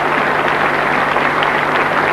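Audience applauding: a dense, steady clapping of many hands, with a faint low hum under it.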